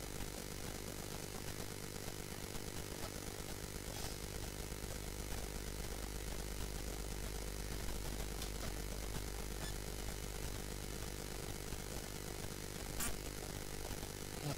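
Steady electrical buzzing hum, the recording setup's background noise, with a few faint clicks.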